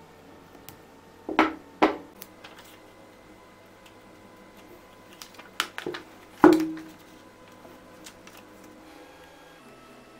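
Metal snips cutting masking tape, snapping shut twice in quick succession, then a few handling clicks and a louder knock with a short ring about six and a half seconds in as the battery and sheet are handled on a hard tabletop.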